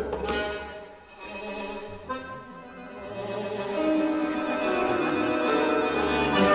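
Tango ensemble of violin, accordion, piano and double bass playing an instrumental passage between sung lines, the violin prominent. The music thins and quietens about a second in, then builds again from about three seconds.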